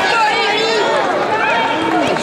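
Spectators and coaches shouting and calling out at once, many voices overlapping in a continuous din.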